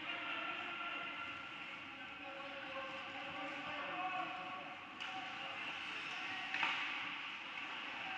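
Live ice hockey game sound in an echoing indoor rink: distant voices and shouts over the general rink noise, with a click about five seconds in and a sharp knock a moment later, the loudest sound.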